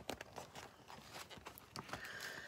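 Faint scattered rustles and soft clicks of paper as a hardcover picture book is handled and its page is turned.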